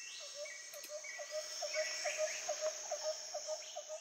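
Woodland ambience of crickets or other insects: a steady high-pitched drone with a rapid run of short, lower chirps, about five a second, and a few brief bird-like calls.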